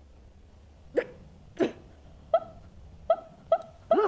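A woman's voice, recorded on magnetic tape, uttering short, clipped single syllables. There are six of them, starting about a second in and coming closer together toward the end.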